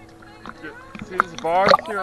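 Sea water sloshing against a shark-diving cage and the divers' wetsuits. About one and a half seconds in, a person's voice rises loudly in an exclamation.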